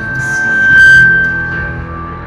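A live rock band playing, with bass guitar and drums under a single high held note that swells to its loudest about a second in and then fades.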